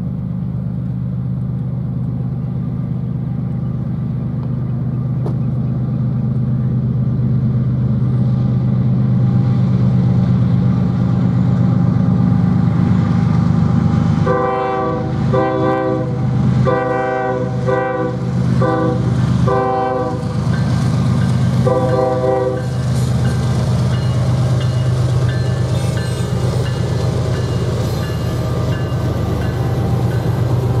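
Norfolk Southern freight train's diesel locomotives approaching and passing, their engine drone growing louder. About halfway through, the lead locomotive sounds its air horn in a string of about seven blasts over some eight seconds, then the engines keep droning as the units go by.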